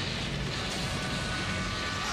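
Cartoon battle sound effect of a spinning-top Wheel's attack smashing through rock: a loud, steady rush of noise.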